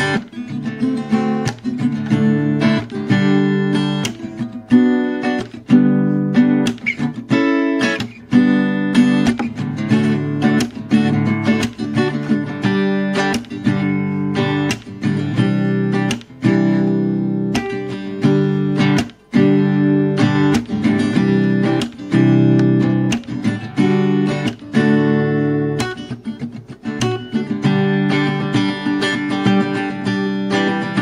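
Acoustic guitar strumming chords in an instrumental passage of a song, with no singing.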